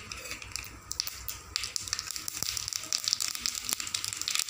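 Small seeds frying in hot oil in a nonstick kadai, sizzling and crackling, the crackle growing busier and louder about a second and a half in.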